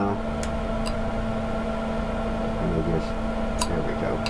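A steady hum from a machine running in the room, with a few faint, sharp clicks of a carving knife cutting chips out of basswood, a couple near the start and one near the end.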